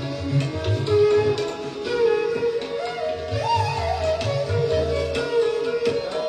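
Bansuri (bamboo transverse flute) playing Raga Marwa with tabla accompaniment. The flute holds a long note from about two seconds in, with a brief upward glide in the middle, while the tabla keeps time with deep bass strokes and sharper strokes.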